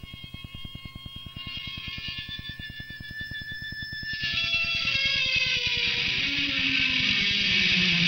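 Italian hardcore punk band recording from a 1989 cassette: held effects-laden guitar tones over a fast, even pulse low down. The music swells, and about halfway through a louder, distorted electric guitar comes in.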